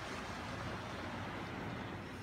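Strong wind outside, a steady low rushing noise with no distinct events.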